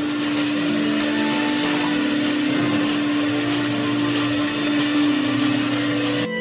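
Hot-water carpet extractor wand rinsing a rug: a steady suction rush with a constant hum, unbroken as the wand is drawn back and forth over the pile.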